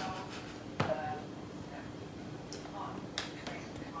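Two light clicks of a spoon against a feeding bowl, about a second in and near the end, with brief soft voice sounds and a steady low hum in the room.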